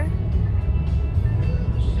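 Steady low road rumble inside a moving car's cabin, tyres and engine noise while driving, with faint music underneath.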